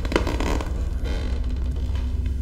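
Low, steady rumbling drone of a horror film's sound design. In the first second there is a brief noisy scrape or rustle.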